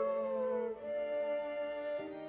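A young child howling like a wolf, a long held note that slides down in pitch and breaks off about three quarters of a second in, over soft film-score music.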